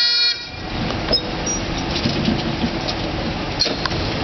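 Bagpipes sounding a steady chord that cuts off suddenly less than half a second in. A steady rushing outdoor background noise with a few faint clicks follows.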